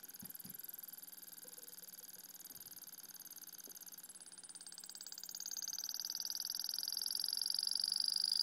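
Modified VCR head-drum motor spinning under Bedini SSG pulse drive, giving a high-pitched whine. The whine grows louder through the second half as the motor speeds up, its tones shifting in pitch.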